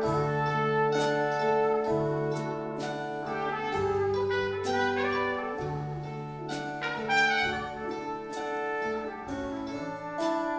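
Live band playing an instrumental break: strummed acoustic guitar with bass under a slow melody of long held notes.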